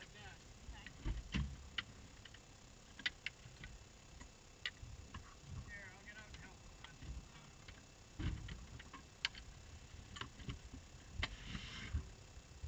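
Scattered clicks, knocks and a few low thumps inside a parked race car's cockpit with the engine off, as a driver shifts in the seat and the steering wheel is taken off its quick-release hub.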